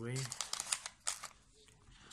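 Plastic packaging bags crinkling and crackling as they are handled in a cardboard box, with a few sharp crackles in the first second or so.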